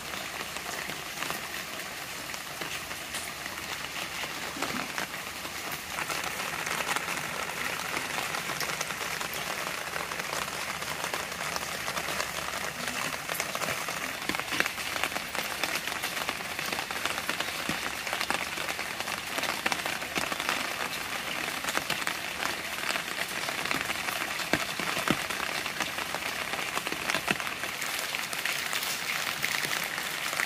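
Steady rain falling, a dense patter of drops on standing water and garden leaves.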